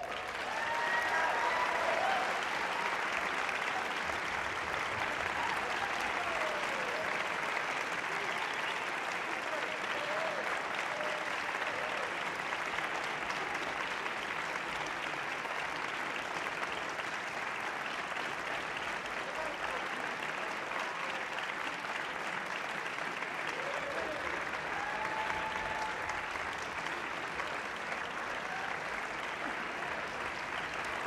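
Large audience applauding steadily as the piece ends, with a few voices cheering over the clapping now and then.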